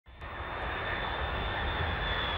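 McDonnell Douglas DC-10 jet airliner on final approach with its gear down, its engines running with a steady high whine over a low rumble. The sound cuts in suddenly at the start.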